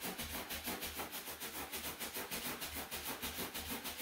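Latex balloon rubbed rapidly back and forth against hair, a quick, even run of rustling friction strokes. The rubbing charges the balloon with static electricity.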